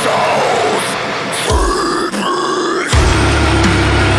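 Extreme metal song at a break in the heavy low end: guitars ring with pitch-bending notes, then two short harsh growled vocals come about a second and a half in. Just before the end the drums and low-tuned guitars crash back in.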